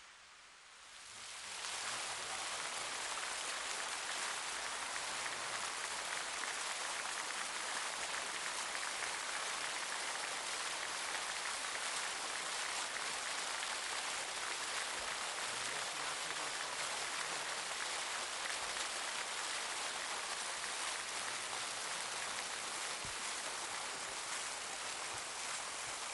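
Many fountain jets splashing steadily down into a shallow pool, a continuous hiss of falling water that swells over the first two seconds and then holds level.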